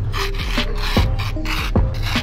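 A wooden spoon scraping through damp black-sand gold concentrate in repeated strokes as it is spread out, over background music with steady held notes and a regular low beat.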